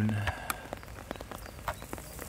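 Raindrops tapping irregularly near the microphone, sharp scattered clicks over a faint hiss of falling rain.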